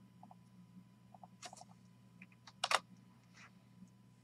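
A few sharp clicks, the loudest about two and three-quarter seconds in, over a steady low electrical hum and faint double ticks that recur every half second to a second.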